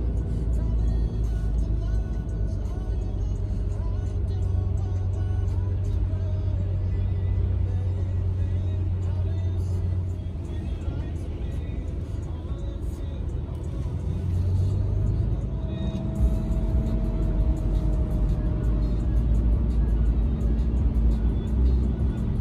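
Background music over the low, steady road rumble of a car, heard from inside the cabin while driving.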